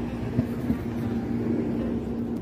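City street ambience: a low, steady traffic rumble with a held hum, and two quick clicks close together near the start.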